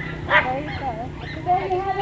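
A dog barking in short sharp barks, one about a third of a second in and another at the end, amid the chatter of people's voices.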